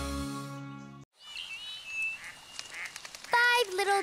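A held chord of background music fades out and stops about a second in. Faint bird chirps follow over a quiet forest ambience. Near the end comes a loud cartoon duck quack that falls in pitch.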